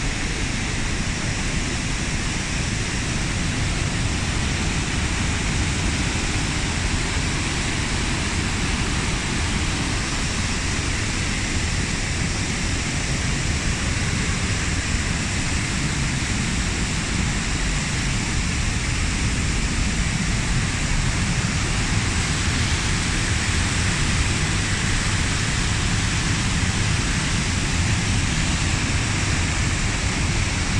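Waterfall and cascading river water rushing: a steady, unbroken noise.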